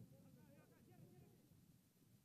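Near silence, with faint, distant shouting voices of football players calling to each other on the pitch.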